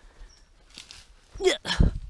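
Faint rustling of brushwood as dogs push through dead branches. Near the end come a short spoken call and a brief, loud low thump.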